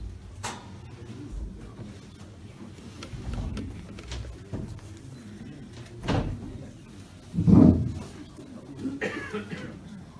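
A few dull thumps and knocks as people move about and settle at a conference desk with microphones. The loudest thump comes about seven and a half seconds in, and a smaller one about six seconds in.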